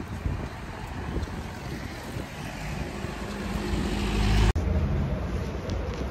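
Outdoor street traffic with wind buffeting the microphone, a vehicle passing louder from about three seconds in; the sound cuts off abruptly about four and a half seconds in, giving way to a lower, steadier hum.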